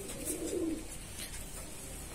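Fantail pigeons cooing: a low, wavering coo in the first second, then only soft aviary background.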